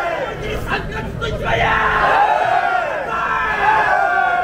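A crowd of men, the bearers of a kiriko lantern float, shouting together in chorus, many voices overlapping in calls that swell and fall away.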